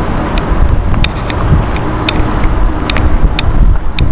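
Wind buffeting the camera's microphone: a loud, uneven low rumble, with a few sharp clicks scattered through it.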